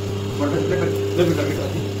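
Steady electric hum of a paper plate making machine running, with indistinct background voices over it.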